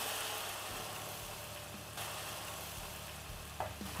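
Vegetable stock poured into a hot frying pan of softened onions and garlic, sizzling steadily and slowly dying down as the liquid takes over the pan. A brief click about two seconds in.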